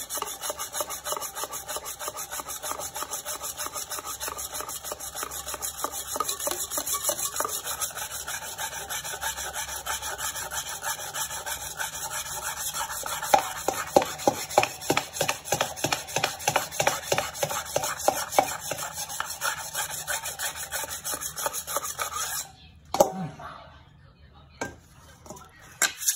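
Wet whetstone rubbed back and forth along the steel blade of a Chinese cleaver in quick, rhythmic sharpening strokes. The strokes stop for a couple of seconds near the end.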